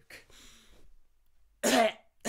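A man coughs once, loud and short, about a second and a half in, after a faint breathy sound at the start.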